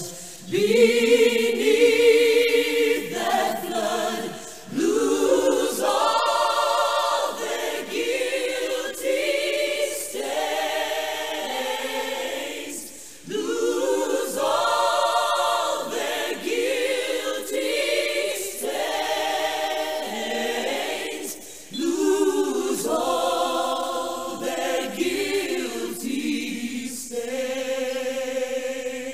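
Choir singing unaccompanied in sustained harmony, in long phrases with short breaks between them about every eight seconds.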